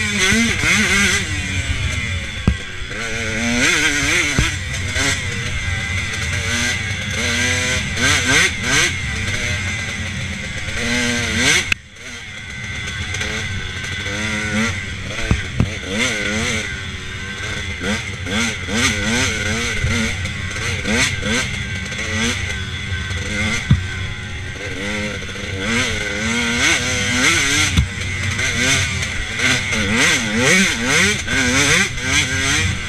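KTM dirt bike engine revving up and down under way on a trail, its pitch rising and falling again and again with the throttle and gear changes. About twelve seconds in, the level dips sharply for a moment.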